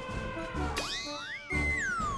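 Comic background music with a steady low beat, over which a whistle-like sound effect slides up in pitch a little under a second in, holds, then glides down near the end.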